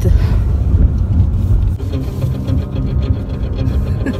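A song playing on the car stereo inside the car's cabin, clearer from about halfway in, over a heavy low rumble from the moving car.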